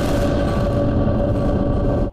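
News channel ident sting: a dense, steady swell of music and effects, with several held tones over a heavy low rumble.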